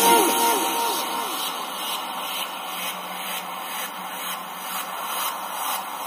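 A small 3 W speaker driver playing music that slides down in pitch and fades out in the first second or so, leaving a steady hiss with a low hum and faint regular beats.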